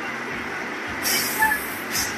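Coach bus air brakes letting off a sharp hiss of air about a second in, lasting about half a second, with a shorter hiss near the end, over a steady rumble of idling buses.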